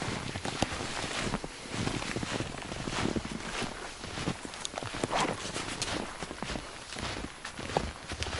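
Footsteps walking through snow, an irregular run of steps with a few sharper clicks among them.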